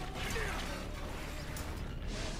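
Faint mechanical clicking and whirring from the anime's audio, typical of the soldier's vertical manoeuvring gear and its wire reels in flight, with a few short clicks over a low hum.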